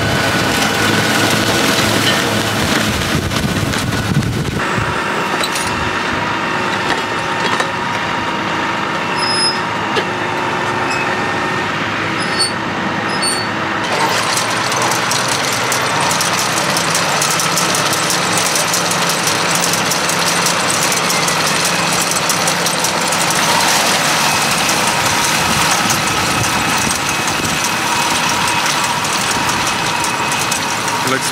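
Case tractor engine running steadily as it drives a PTO hay tedder, then a twin-rotor rake, through cut grass. The sound changes abruptly twice, about four and fourteen seconds in.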